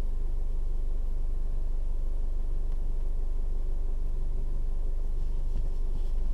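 Car engine idling steadily while the car stands still, heard from inside the cabin as an even low hum.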